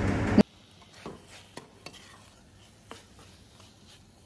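A spatula stirring prawns through a thick curry-leaf paste in a kadai: a few faint, scattered scrapes and taps of the spatula on the pan. A steady hiss in the first half-second cuts off abruptly.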